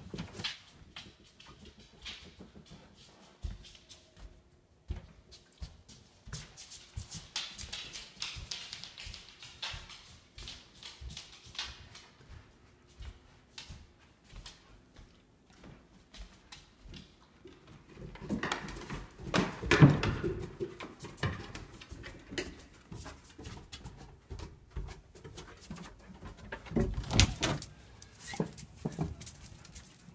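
A high-content wolfdog moving about, with scattered clicks, knocks and shuffling throughout, and louder bouts of noise at about eighteen to twenty seconds in and again near twenty-seven seconds.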